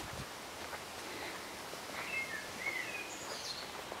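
Quiet outdoor background hiss with a few short songbird chirps, most of them about two to three seconds in.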